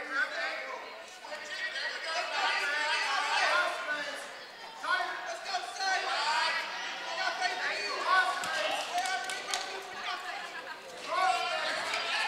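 Several people calling out and talking in a large, echoing gym hall, with a few dull thuds.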